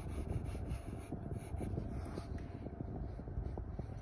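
Graphite pencil strokes scratching on sketchbook paper as a curved outline is drawn, over a steady low background rumble.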